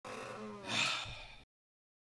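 A short breathy vocal sound, like a gasp, from a person's voice. It lasts about a second and a half and cuts off suddenly.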